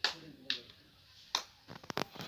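Several sharp clicks: one at the start, one about half a second in, one a little past a second, and a quick cluster of three or four near the end.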